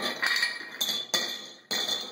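A glass clip-top jar being handled: about five sharp clinks of glass and its metal clasp in two seconds, each ringing briefly.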